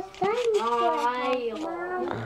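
A young child's voice holding one long, wordless, pitched vocal sound for about a second and a half, a drawn-out play noise.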